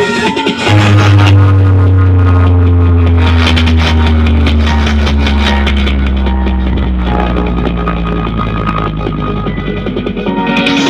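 Loud music played through a large stacked sound system of subwoofer and speaker cabinets during a sound check. About a second in, a very deep bass note comes in and slides slowly down in pitch over several seconds.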